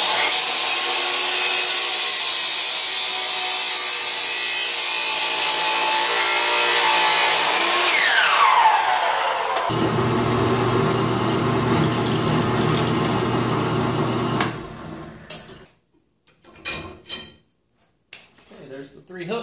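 Sliding miter saw cutting steel stock, a loud steady grinding noise, then its blade whining down in pitch as it spins to a stop about eight seconds in. Next a Grizzly bench drill press motor runs for about five seconds and shuts off, followed by a few light knocks.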